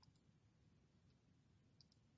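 Near silence broken by a few faint computer-mouse button clicks: a quick pair at the start, a single one about a second in, and another quick pair near the end.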